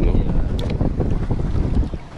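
Wind buffeting the microphone on open water: a steady, rough low rumble, with the wash of choppy water against a pedal boat beneath it.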